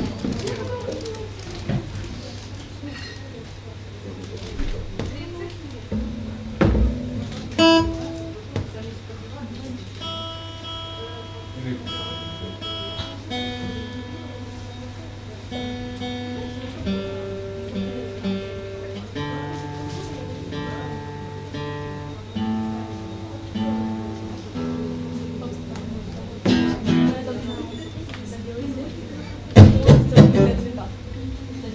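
Acoustic guitar picked quietly through the PA, a slow run of held notes and chords that change about every second, over a steady electrical hum. A few knocks sound before the playing starts, and louder sounds come near the end.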